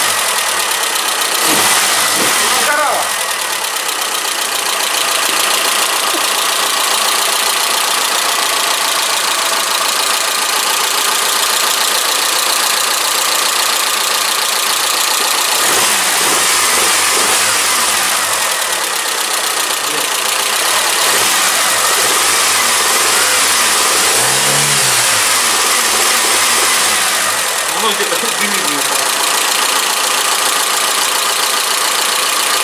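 Mitsubishi Chariot's newly installed four-cylinder engine idling on its first runs after the engine swap, under a loud, steady hiss.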